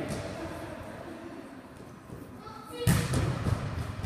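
A single loud thud of a volleyball hitting the hard floor about three seconds in, echoing in the large gym, over players' chatter and laughter.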